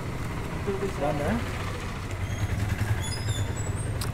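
Steady low rumble of street traffic and idling engines, with a faint voice in the background about a second in and a few short, high chirps in the second half.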